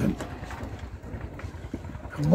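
A low, steady background rumble in a brief pause between a man's speech, with no clear individual sound in it.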